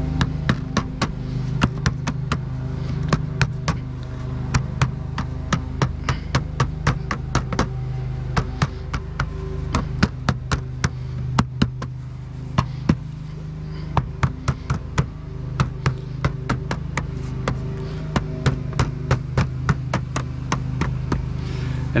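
A mallet tapping soft lead chimney flashing to fold it around a corner: dozens of quick light taps in runs of a few a second, with short pauses, over a steady low hum.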